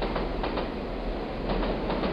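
Train sound effect: a train rolling along the track, with a few faint clacks from the wheels.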